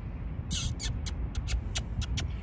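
Short high-pitched ticks or chirps, several a second, with the brightest cluster about half a second in, over a steady low rumble.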